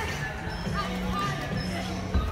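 Background music with held notes over a low bass line.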